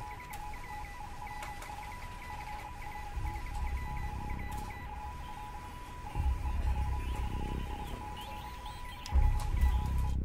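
Tense background score: a high note held steadily, over low swells that come in about every three seconds.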